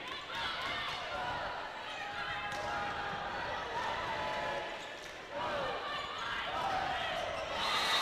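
Indoor arena crowd noise with faint voices during a volleyball rally, with the thuds of the ball being struck; the crowd noise rises near the end.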